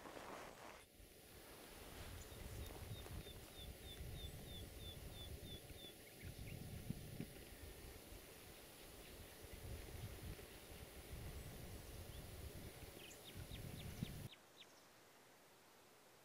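Wind buffeting the microphone in gusts, with a small bird's run of about ten short, high, falling notes a few seconds in and a few faint clicks near the end. The sound cuts off abruptly about two seconds before the end.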